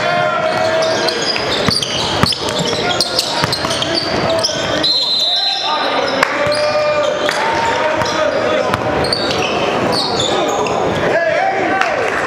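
Live gym sound of a basketball game: a ball being dribbled on a hardwood court, short high sneaker squeaks, and the voices of players and spectators talking.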